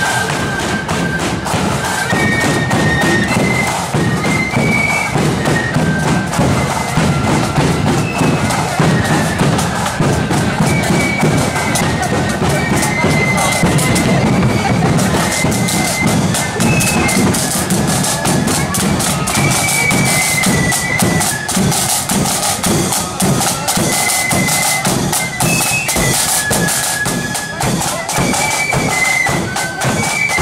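Marching flute band playing a tune: a melody on high flutes over a steady side-drum beat. The drumming grows louder about halfway through.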